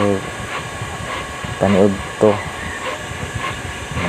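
A man's voice in a few short bits over a steady background hiss, with faint light ticks about every half second.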